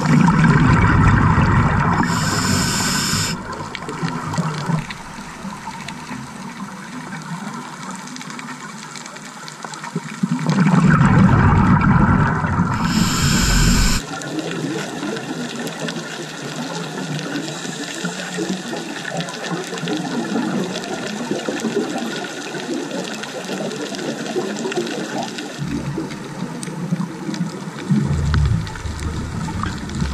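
Scuba diver breathing through a regulator underwater: two rounds of exhaled bubbles gurgling, each ending in a short high hiss, about ten seconds apart. A steady, quieter underwater rush fills the rest.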